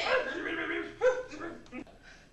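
A person's voice making wordless, dog-like yipping and whimpering sounds, with a sharper, louder yip about a second in.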